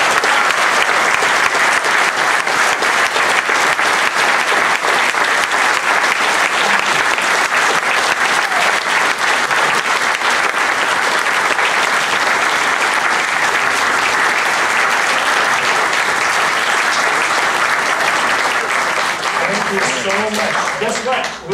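A large audience applauding, steady and sustained.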